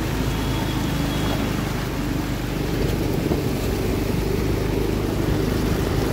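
A motor vehicle's engine running steadily as it drives through shallow floodwater, with the wash of water around the wheels.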